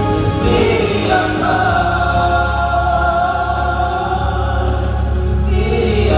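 A small gospel praise team of several singers singing together through handheld microphones and a PA system, holding long sustained notes.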